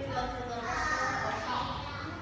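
Children talking: indistinct child speech that the transcript does not catch.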